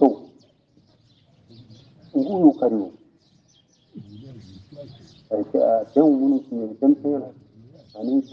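A voice in short phrases with pauses between, and faint, continual bird chirping behind it.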